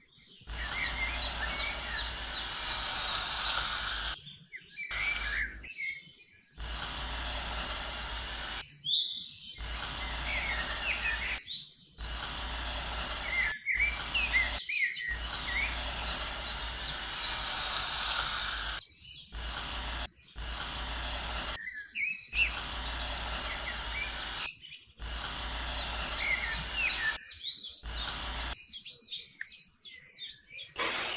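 Small birds chirping and calling over a steady outdoor background hiss, broken into short stretches by a dozen or so abrupt cuts where the sound drops out.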